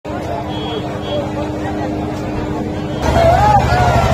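Crowd chatter over the steady low running of a motor vehicle's engine. About three seconds in the sound jumps louder, with nearer voices over the engine.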